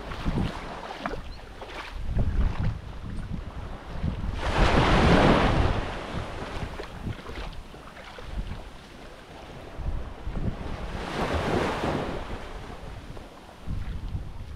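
Small waves washing onto a sandy beach, swelling twice about six seconds apart, with wind gusting on the microphone as a low rumble throughout.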